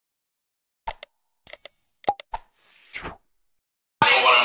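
Sound effects of a subscribe-button animation: two quick mouse clicks, a short bell ding about one and a half seconds in, three more clicks, and a brief swish near three seconds.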